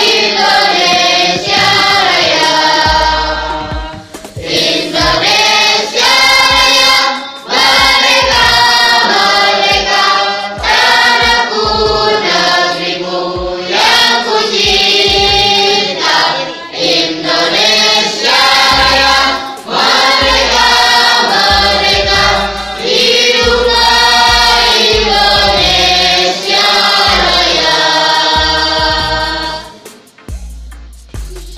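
A group of young men singing a song together in unison, loud and continuous, with low thuds beneath the voices.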